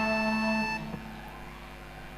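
A live band's held chord, electric guitars and keyboard ringing on a steady pitch, cuts off about two-thirds of a second in. Only faint stage and audience noise follows.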